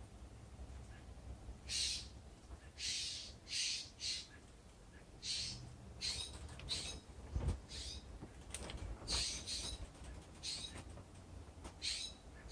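Steller's jay giving about a dozen short, harsh, raspy calls at irregular intervals, beginning about two seconds in. A low thump is heard about halfway through.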